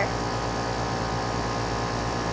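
A steady low hum with an even hiss over it, unchanging throughout, with no distinct events.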